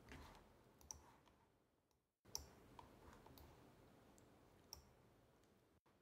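Near silence, with three faint computer-mouse clicks spread across the few seconds.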